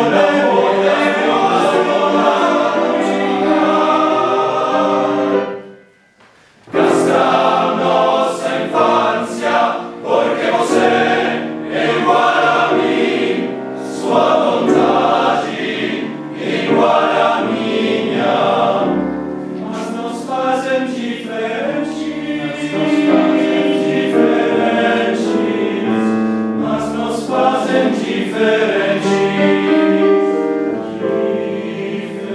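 Men's choir singing a contemporary choral piece with piano accompaniment. The singing cuts off suddenly about five or six seconds in, then comes back in loud less than a second later.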